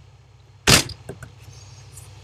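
A single loud, sharp thump close to the microphone about two-thirds of a second in, followed by a few faint clicks, over a low steady electrical hum.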